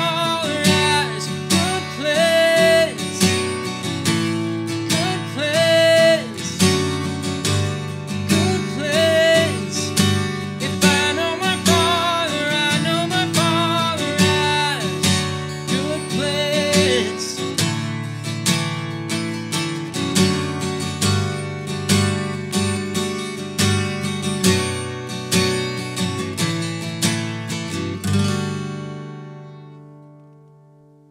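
Acoustic guitar strummed in a steady pattern, with a man singing over it through the first half or so. The strumming then goes on alone, and a last chord is left to ring and fade near the end.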